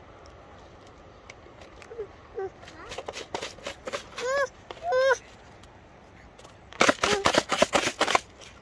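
Short high, arching vocal calls from a young child, then about a second of rapid sharp clicks and crackles near the end, the loudest part.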